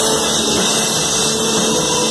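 Drum kit played hard in a live band, crash cymbals ringing in a dense wash over the held notes of the band's electric guitar.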